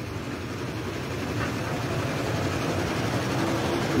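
A motor vehicle's engine running steadily, slowly growing louder across the few seconds as it draws nearer.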